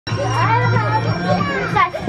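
Children's voices calling out and shrieking in play, without clear words.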